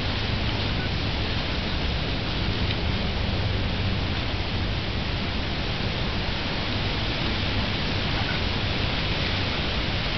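Steady, even background noise with a low hum underneath.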